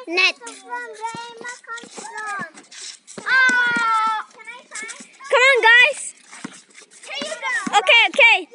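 Children's voices calling and shouting over one another, with one long drawn-out call about three and a half seconds in.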